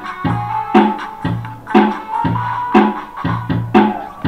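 Electric bass guitar playing a song's bass line over a backing track with a steady drum beat, a strong hit about once a second and lighter hits between.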